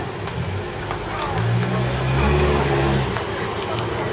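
A motor vehicle's engine passing close by on the street, its low hum swelling from about a second in and fading away near the end, over the chatter and background noise of a busy street.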